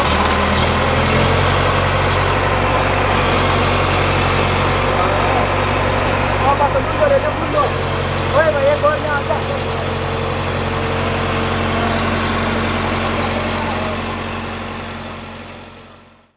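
Diesel engine of an ACE hydra mobile crane running steadily close by, with men's voices briefly over it in the middle. The sound fades out near the end.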